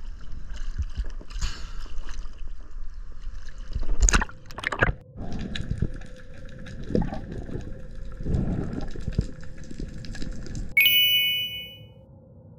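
Water sloshing and gurgling around a freediver at the surface, with a burst of splashing about four seconds in as he dives under. After that the water sounds turn to muffled underwater rumbles and bubbling, and near the end a sudden ringing tone starts and fades out.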